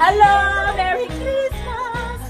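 A woman's voice singing out loud in a yodel-like way, sliding up at the start, holding long notes and wavering near the end, over jingle-bell Christmas music with a steady beat.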